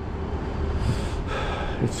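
Steady low background rumble with two short breaths, about one second in and again about half a second later.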